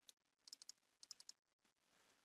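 Faint clicking of a computer keyboard and mouse: a few quick clicks about half a second in and a few more about a second in.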